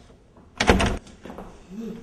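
A single loud bang about half a second in, lasting under half a second, followed near the end by a short murmured 'mm-hmm'.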